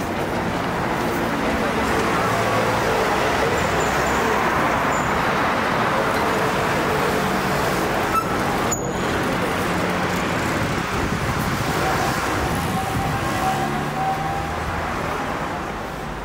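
Steady street traffic noise, with a car driving past close by and a motor scooter approaching.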